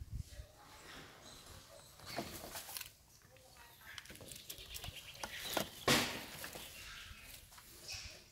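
Long-tailed macaques calling at close range in short, uneven bursts, the loudest about six seconds in.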